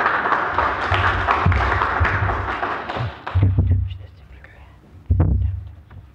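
An audience applauding for about three seconds, then stopping, followed by a couple of dull thumps on the microphone.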